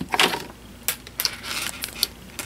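Handling noise: a headphone cable being picked up and handled, a scatter of light clicks and rustles.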